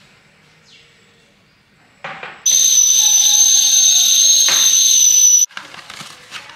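Stainless steel stovetop kettle whistling at the boil: a loud, steady, high whistle over a hiss of steam. It comes in about two and a half seconds in and cuts off suddenly three seconds later.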